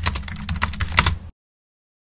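Computer keyboard typing: a quick run of key clicks over a fading low rumble, cutting off abruptly just over a second in.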